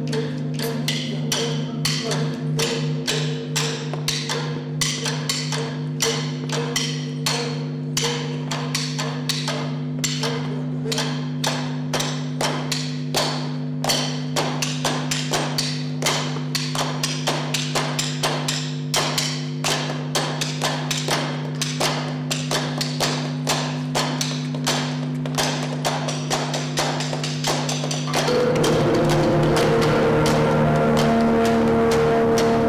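Flamenco palmas: sharp hand claps, several a second, over a steady sustained drone from the band. Near the end the drone shifts to a louder, fuller chord.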